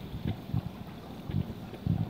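Handling noise on a phone microphone as it is carried and swung: irregular low bumps and rumble over a faint steady hiss.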